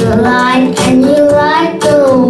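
A six-year-old boy singing a song into a microphone, holding notes and sliding between them.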